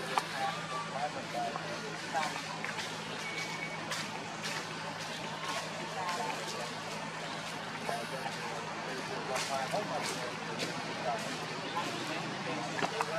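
People's voices talking in the background over a steady low hum, with occasional sharp clicks.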